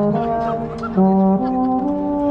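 Marching band brass playing sustained chords. A held chord eases off, then a new, louder chord comes in about halfway through.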